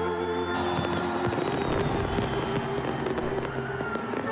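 Fireworks popping and crackling in quick, dense bangs, starting about half a second in, over background music.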